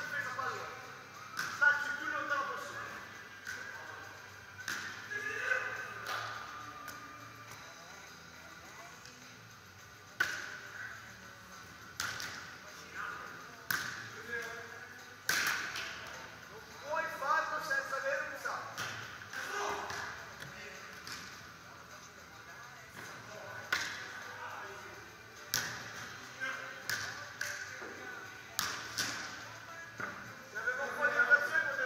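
A volleyball being struck again and again in serves and forearm passes, each hit a sharp slap that echoes around a large hall, with distant players' voices between the hits.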